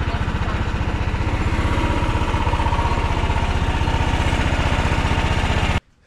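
Predator 420 single-cylinder engine in a golf cart idling steadily through a small car muffler while still cold; the owner says it won't stay running. The sound cuts off suddenly near the end.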